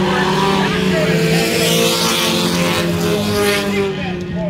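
Pure stock race car engines running at speed as several cars lap a paved short-track oval. It is a steady mix of engine notes whose pitch drifts slowly.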